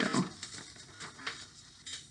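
Magazine pages rustling faintly as they are handled, with a few light ticks.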